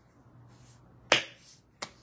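Two finger snaps about 0.7 s apart, the first louder and a little longer.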